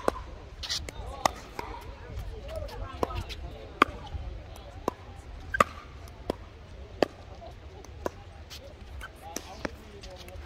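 Pickleball rally: paddles striking a hard plastic pickleball in a quick, irregular string of sharp pops, about one a second and sometimes two in quick succession.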